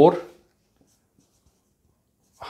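Marker writing on a whiteboard: a few faint taps and strokes, after a man's single spoken word at the start.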